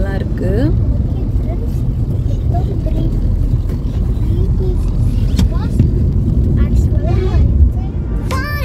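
Steady low road and engine rumble inside a Maruti Suzuki Ciaz sedan's cabin while it drives along a highway, with faint voices now and then.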